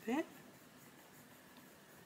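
Faber-Castell Polychromos oil-based coloured pencil shading on a colouring-book page, a faint steady rub of lead on paper.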